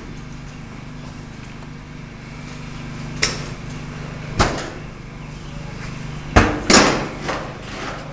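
Four sharp metal knocks, the loudest two close together near the end, as hydraulic hoses are handled against the tractor's steel body and tank, over a steady low hum.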